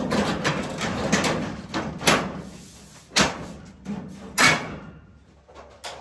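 An under-deck ceiling panel rubbing and scraping as it is pushed along the overhead rails, followed by several sharp knocks and clacks as the panels are handled, the loudest two about three and four and a half seconds in.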